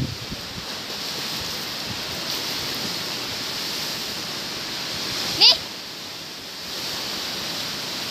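Steady outdoor rushing noise, even and unbroken, with one short spoken word about five and a half seconds in.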